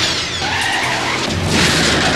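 Film sound effects of a car skidding, tyres squealing over a loud rush of noise that surges again near the end, with a short laugh at the start.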